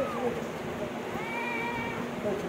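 Newborn baby crying: one thin, drawn-out wail in the second half.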